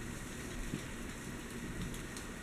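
Steady low background hiss, with no distinct sounds standing out.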